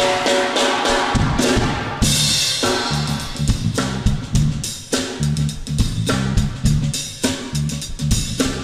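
A live band playing upbeat dance music on drum kit and bass guitar. The bass and kick drop out for about the first two seconds, then come back in on a hard hit and keep a driving groove.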